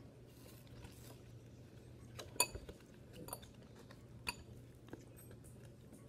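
Faint handling sounds of a small paper milk carton being opened by hand: a few short clicks and clinks, the loudest with a brief ring about two and a half seconds in.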